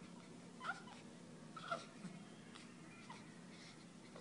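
Young baby making short, high-pitched squeaks and coos: two louder ones about a second apart in the first half, a fainter one later, over a faint low hum.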